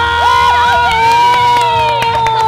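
A woman's high-pitched voice holds one long, steady call, with shorter cheering voices rising and falling around it near the start.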